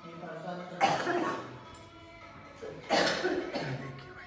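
A person coughing twice, about two seconds apart, over faint background music.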